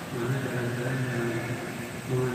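An indistinct man's voice in short, held, pitched stretches.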